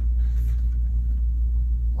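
Steady low background rumble with no clear events on top.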